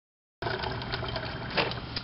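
Water running from a water cooler's tap into a plastic pitcher as the cleaning solution is drained out, a steady rush over a low hum, starting abruptly about half a second in.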